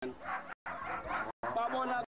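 A man talking in a language other than English. The sound cuts out completely for brief moments twice.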